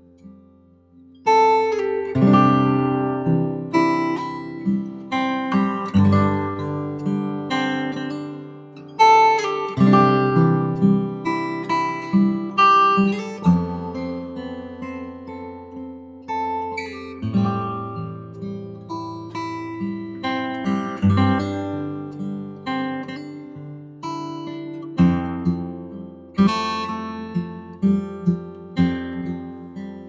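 Background music of acoustic guitar, a steady run of plucked and strummed notes that starts about a second in after a brief pause.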